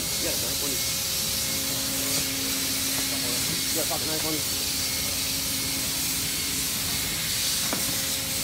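Blowtorch flame burning with a steady hiss, and a low steady hum joining about a second and a half in.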